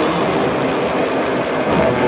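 Black metal band playing live: a loud, dense, steady wall of distorted guitar and drums.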